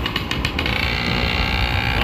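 A 50cc two-wheeler's small engine running while riding, mixed with road and wind noise, with a short run of sharp clicks in the first half second.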